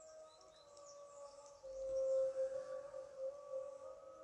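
A faint, steady held tone that dips slightly in pitch and swells a little in the middle.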